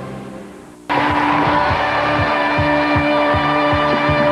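The tail of a station bumper's music fades out, then about a second in, upbeat rock-style television theme music starts abruptly with a steady drum beat: a talk show's closing-credits theme.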